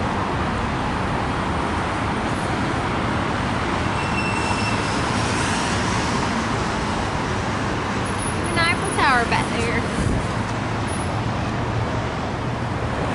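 Steady road traffic noise from nearby city streets, with a brief voice about three-quarters of the way through.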